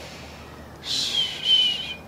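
A bird calls once, about a second in: a raspy, whistled note about a second long that falls slowly in pitch.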